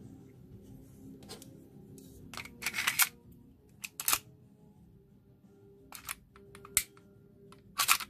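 Sharp clicks and short rattles of a WE Tech M9 airsoft pistol's slide and frame being handled and fitted together. The loudest cluster of clicks comes about two and a half to three seconds in, with single clicks around four, six and seven seconds in and again near the end.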